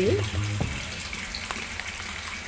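A steady, even background hiss, following the tail end of a spoken word at the start, with one faint click about one and a half seconds in.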